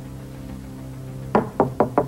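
Four quick knocks on a wooden door in the second half, over soft background music of steady held notes.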